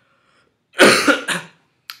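A young man coughing: one short, loud fit of two or three quick coughs about a second in. It is the lingering cough left over from a cold, which comes from a ticklish throat.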